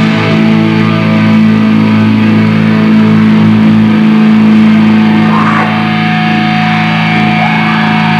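Live black metal band: distorted electric guitars and bass hold one long, sustained chord with no drums. A steady high tone joins about six seconds in.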